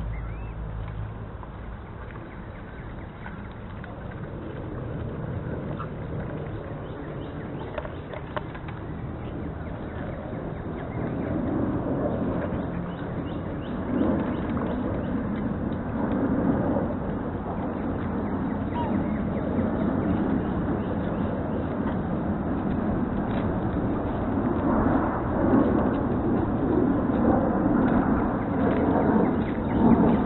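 A flock of waterfowl (swans, geese and ducks) calling around a feeding station at the water's edge, over mixed outdoor noise that gets louder about a third of the way in.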